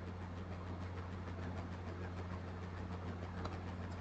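Faint steady low hum with light background hiss, the room tone of a recording made at a computer.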